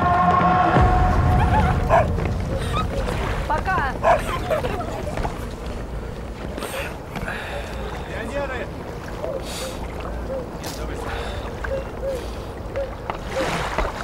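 A sustained music chord that stops about a second in, followed by waterside ambience: a low steady rumble with people's voices, including a shouted word.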